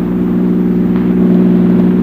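Radio-drama sound effect of a car engine running steadily, a low even hum.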